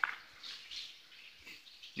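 Birds chirping faintly in the woods, with a few short calls during a lull in the talk.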